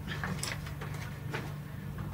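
A few light clicks and knocks of small objects being handled and put away, over a steady low hum.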